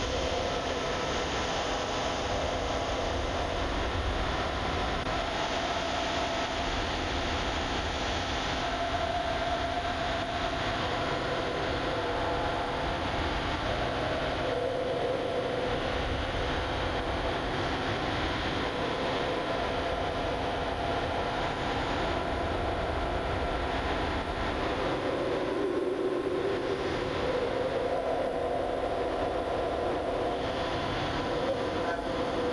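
Steady rushing background noise on a video-link audio feed, with no speech.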